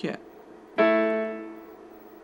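Electronic keyboard with a piano sound playing A and D together, a perfect fourth of five semitones. The two notes are struck once, a little under a second in, and fade away.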